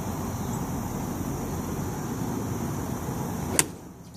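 Golf iron striking the ball off the turf once, a single sharp crack near the end, over a steady background hum.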